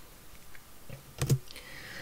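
Two quick clicks of a computer key a little over a second in, advancing the lecture slide.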